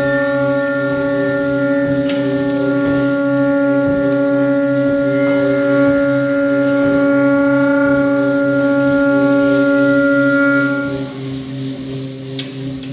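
Saxophone holding one long, steady note that cuts off about a second before the end, over a low, rapidly pulsing electronic drone.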